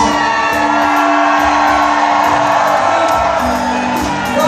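Celtic rock band playing live over amplified sound, with fiddle and drums: a long held note that drops to a lower one about three seconds in, over a steady drum beat.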